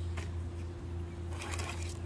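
Hard white plastic skimmer sizing discs being handled and lifted out of a cardboard box: a small click near the start, then a brief rustling clatter about a second and a half in, over a steady low hum.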